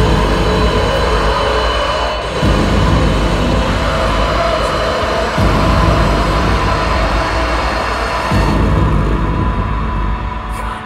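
Live dark, droning electronic music: a dense, loud wall of sound over heavy low booms that change about every three seconds.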